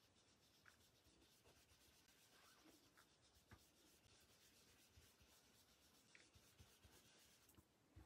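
Near silence: the faint soft rubbing of a foam blending brush being swirled over cardstock, with a few small ticks.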